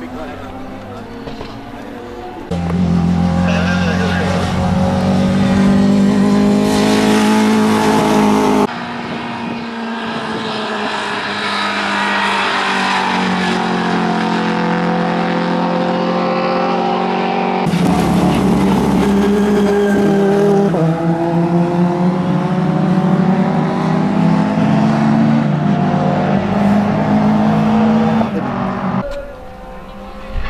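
Racing car engines at high revs, the engine note rising and falling as the cars accelerate, shift and go past, in a run of short clips that cut off suddenly from one to the next.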